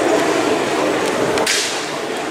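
Steady din of an underground tram station, with a sudden sharp hiss about one and a half seconds in that fades within half a second.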